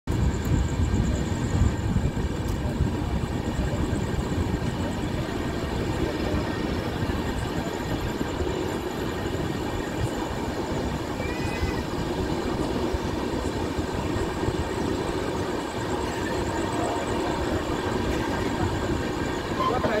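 Punjab Mail express train running, heard from an open coach door: a steady rumble of the coaches and wheels on the track, with a faint high whine over it.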